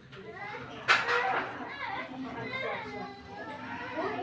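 Children's voices talking and playing in the background, with a sharp click about a second in followed by a loud burst of voice.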